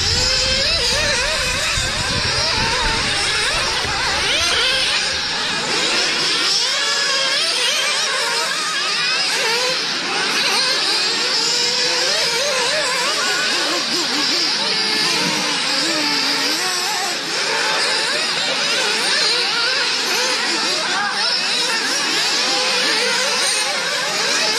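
Several nitro RC off-road buggies racing together, their small glow-fuel two-stroke engines whining and overlapping, pitch rising and falling as they accelerate and back off.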